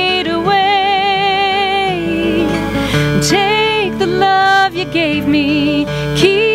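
A woman singing a slow ballad live, holding long notes with vibrato, accompanied by a strummed and picked acoustic guitar.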